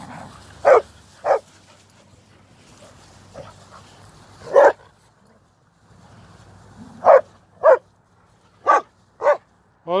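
A dog barking: seven short barks, a pair about a second in, a single one midway, then four in quick succession near the end.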